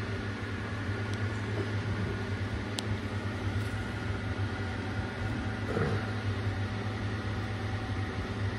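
Steady mechanical hum and hiss with faint high steady tones above it, and one faint click about three seconds in.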